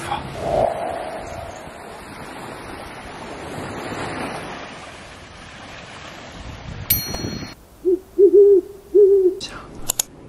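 Light surf and wind on a sandy beach, followed by a click and three owl hoots in quick succession near the end. The hoots are loud and are an added sound effect marking the cut to night.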